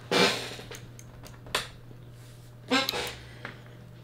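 A MIDI keyboard's power switch clicking off once, a single sharp click about one and a half seconds in, over a low steady hum. A short murmur of a voice follows near the end.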